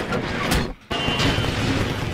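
Explosion sound effects from a TV monster battle as the giant monster is blown apart: a sudden sharp crash about half a second in, a brief break, then a long noisy blast.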